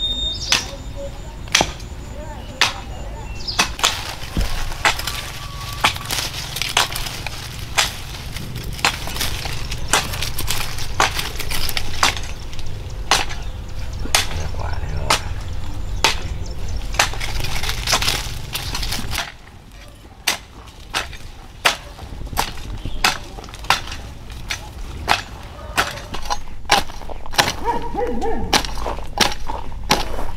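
Hand garden work: a run of sharp snaps and knocks, about one or two a second, as plant stems are pulled and broken, over a low steady rumble. About two-thirds of the way through, the rumble drops away and the knocks go on as a hoe chops into dry soil.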